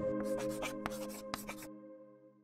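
Ambient background music with long held tones, fading out. Over it comes a quick run of scratchy, pen-on-paper writing sound effects, about nine short strokes in a second and a half.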